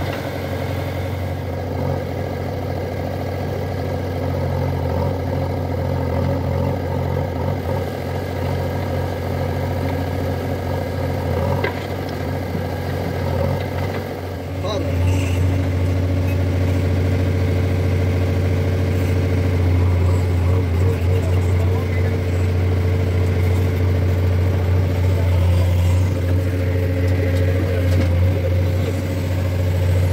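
Diesel engines of a JCB 3DX backhoe loader and a Swaraj tractor running steadily at idle. About halfway through it changes to the JCB's diesel engine heard from inside its cab, louder, with a steady deep drone as the backhoe arm digs.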